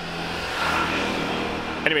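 Motor scooter passing close by. Its engine noise swells to a peak about a second in, then fades.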